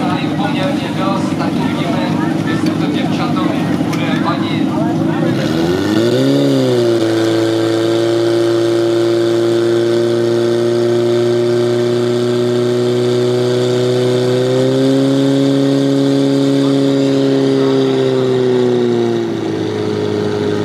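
Portable fire pump's petrol engine running, revved up about six seconds in and then held at a steady high-speed drone while it pumps water through the hose lines. The pitch steps up slightly partway through and drops near the end as the engine is throttled back.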